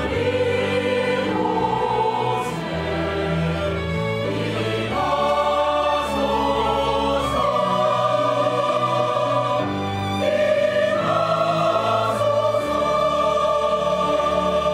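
A church choir singing in full sustained chords with string accompaniment of violins and low strings, the harmony moving to a new chord every couple of seconds.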